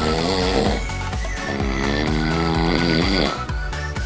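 A sleeping man snoring: two long snores, the second longer, over background music.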